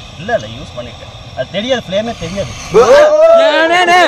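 Men's voices: quieter talk at first, then loud laughing and excited calling from just under three seconds in.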